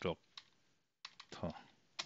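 Computer keyboard being typed on: a few separate key clicks, with a short pause about halfway through.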